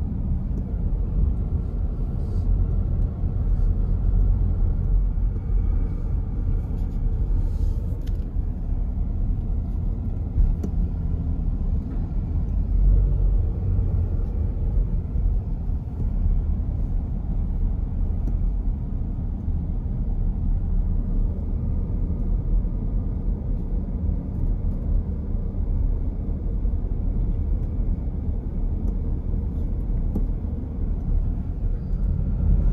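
Steady low rumble of a moving car heard from inside the cabin: tyre and road noise with engine hum, holding even throughout.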